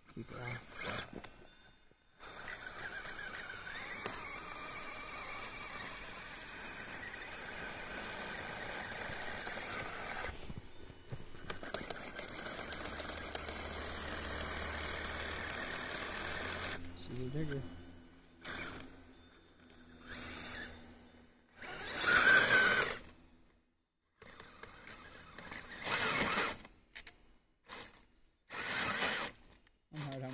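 Electric drive of a radio-controlled tracked snow vehicle whining steadily for about fourteen seconds as it churns through snow, then running in several short bursts, the loudest about two-thirds of the way in.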